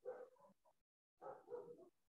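A dog barking faintly in two short bouts, the second about a second in, heard through a video-call microphone.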